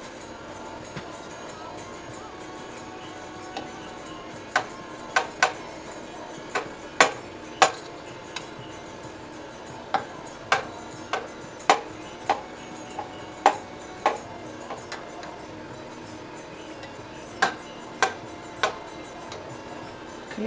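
A metal knife blade tapping and clicking against the inside of a stainless steel pot while cutting set milk curd into cubes for mozzarella. The taps are irregular, about twenty sharp clicks, starting a few seconds in.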